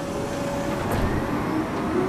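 Steady mechanical rumble from the TV episode's soundtrack, with a faint hum that shifts slightly in pitch.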